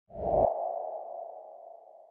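Electronic intro sound effect: a brief low hit, then a sonar-like ringing tone that slowly fades away.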